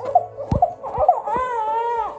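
Baby fussing: a few short whimpers, then one drawn-out, high whine that rises and falls in the second half. Two dull knocks come about halfway through.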